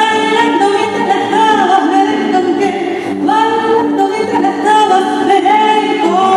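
A woman singing live into a handheld microphone over musical accompaniment, with long held, gliding notes.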